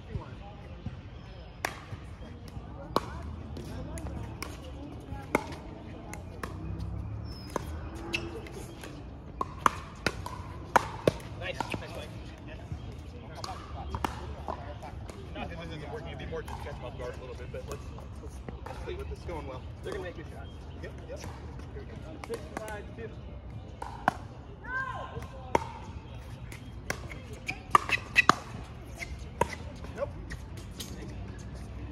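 Pickleball play: hard paddles popping against the plastic ball, with the ball bouncing on the court. The sharp pops come at irregular intervals, with a quick run of them near the end.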